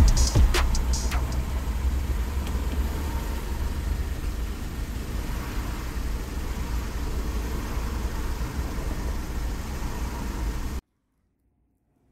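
Steady low rumble and hiss of a car in motion, heard from inside the cabin. It stops abruptly near the end.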